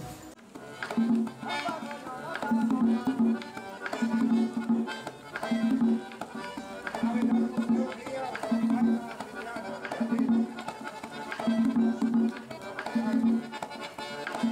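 Accordion and a hand-played tambora drum playing lively Dominican folk music, with a strong low note coming back about every one and a half seconds.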